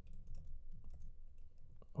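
Computer keyboard typing: a quick run of light, irregular keystrokes as a short phrase is typed.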